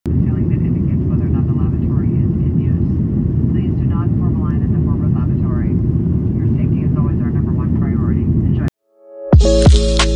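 Steady heavy low rumble with faint, indistinct voices over it, cutting off abruptly about nine seconds in; after a moment of silence, music with a deep bass comes in loudly just before the end.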